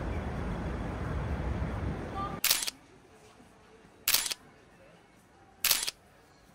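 Steady outdoor city ambience that cuts off about two and a half seconds in. Then three loud camera-shutter clicks, about a second and a half apart, with near silence between them.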